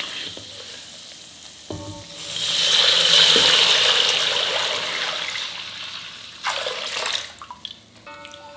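Milk poured into a metal pan of grains frying in hot ghee: after a faint sizzle and a knock, a loud hissing rush starts about two seconds in and slowly dies down, with a second short burst near the end.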